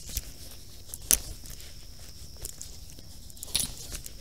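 Stretchy fabric arm sleeve rustling and scuffing as it is pulled up the arm by hand. It comes in a few short scuffs, the sharpest about a second in.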